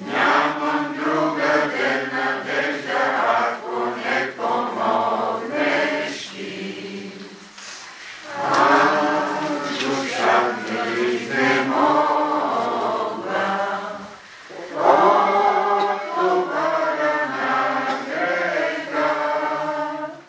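A congregation singing a hymn together in Bulgarian, in long sustained phrases with brief pauses between lines about seven and fourteen seconds in.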